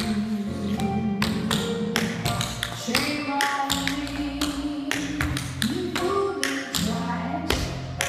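Tap dancing: tap shoes striking a wooden floor in quick, irregular strings of sharp taps over a backing music track with sustained instrumental notes.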